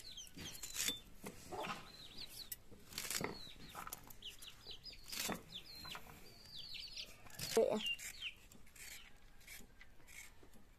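Crisp cuts of a bundle of long beans being sliced on a bonti's curved blade, a stroke every second or two. Chickens clucking and chicks cheeping with short high chirps in between.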